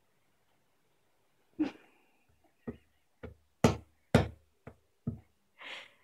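A baby's hand knocking on wooden furniture: about seven sharp, irregular knocks over three or four seconds, the loudest in the middle. A short breathy sound follows near the end.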